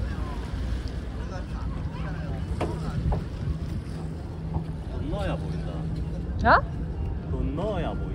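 Open harbour ambience: wind on the microphone over a steady low engine hum from the harbour. Brief voices of people nearby break in, the loudest a short call about six and a half seconds in.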